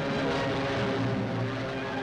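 Propeller-driven aircraft engines droning steadily, with a pitch that rises slowly near the end.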